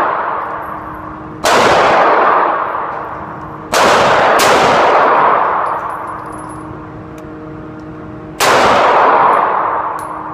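Sig Sauer P250c 9mm pistol fired in slow single shots inside an indoor range, four loud reports with a long echoing decay after each, two of them less than a second apart near the middle. This is test fire after a stainless steel guide rod replaced a part that had caused stovepipes and failures to extract.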